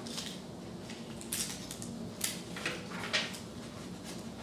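Sheets of paper rustling and crinkling as they are handled and rolled into cylinders, in four or five short, sharp bursts.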